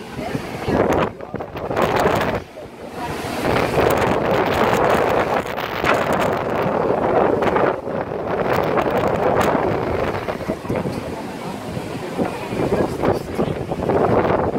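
Sea surf washing and breaking into a rocky inlet, rising and falling in surges, with wind buffeting the microphone.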